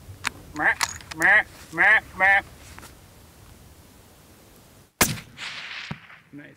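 Four short, wavering vocal calls, then a single hunting-rifle shot about five seconds in, with its echo rolling back off the hills.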